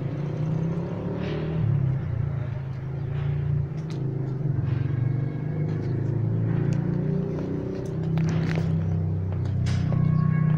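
A continuous low rumble that rises and falls unevenly, with a few faint clicks.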